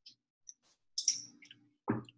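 A few faint mouth clicks and lip smacks from someone tasting salad dressing off a finger, in a quiet room.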